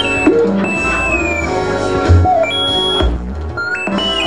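Free-improvised experimental music from a small live band. A black wind instrument plays long held notes that jump abruptly and slide in pitch, including a slow downward slide about a second in, over low bass tones.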